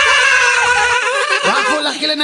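Several high-pitched voices crying out together in one long, wavering wail that breaks off about a second and a half in, when a lower male voice cuts in.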